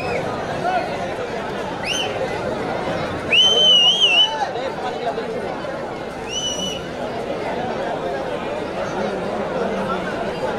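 Crowd of spectators chattering at a kabaddi match, with three high whistles over the babble: a short rising one about two seconds in, a longer wavering one from about three and a half seconds that is the loudest moment, and a short one at about six seconds.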